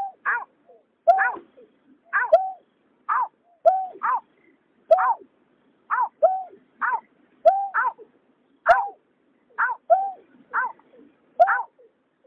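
Bird calls in a fast, steady series of short notes, about two to three a second. Falling notes alternate with a lower hooked note. This is a recording of greater painted-snipe (nhát hoa) and cà cuốc calls, male and female.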